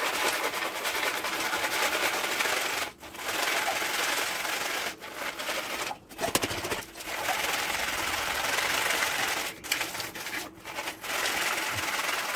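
Roasted mixed nuts rattling in a plastic colander as it is shaken to sift off their loosened skins, in runs broken by a few short pauses.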